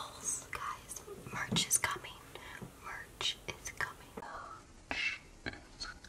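A woman whispering quietly in short, breathy bursts.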